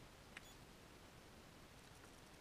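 Near silence: a faint steady hiss, with one small click about half a second in.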